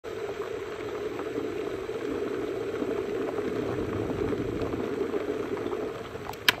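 Glass electric kettle switched on and heating water: a steady bubbling rumble with fine crackling from the water inside.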